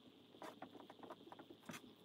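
Dry-erase marker writing on a whiteboard: faint, irregular short scratches and taps of the tip on the board.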